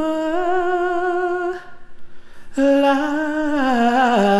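A solo singing voice holds long wordless notes with a slight vibrato as the song winds down. There is a short break for breath about a second and a half in, then another held note that slides downward near the end.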